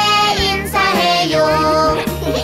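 A Korean children's song: a child's voice sings over upbeat backing music with a steady beat.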